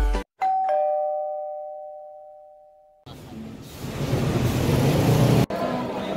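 A two-tone ding-dong chime sound effect, high note then low, rings out once and fades over about two and a half seconds, marking the subscribe bell. About three seconds in it gives way to the steady hubbub of crowd noise and chatter in a shopping mall.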